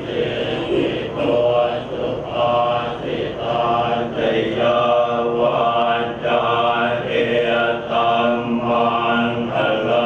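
A group of Thai Buddhist monks chanting Pali verses together in unison, one continuous recitation in even phrases.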